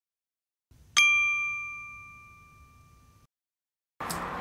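A single bright chime sound effect for an animated intro: one sharp ding about a second in, ringing on a steady high pitch and fading over about two seconds before cutting off.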